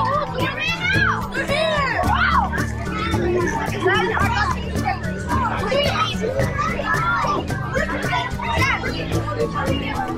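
Many children talking and calling out over each other in a crowded room, with music playing underneath.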